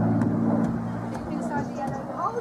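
Supermarine Spitfire's piston engine giving a steady, even drone, with voices starting in the second half.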